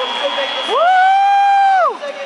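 A single loud, siren-like pitched tone that glides up about half a second in, holds one steady pitch for about a second, then glides down and stops just before the end.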